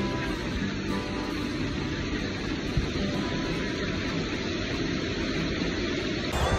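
Steady rush of a mountain creek running fast over rocks and rapids, with a music track underneath.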